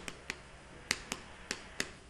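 Chalk tapping on a chalkboard while words are written: about six short, sharp clicks spread over two seconds, each one a chalk stroke starting against the board.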